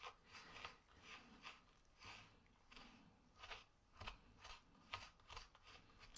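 Faint, gritty scraping of a wooden stir stick mixing sand into epoxy resin in a small plastic cup, in short strokes about two a second.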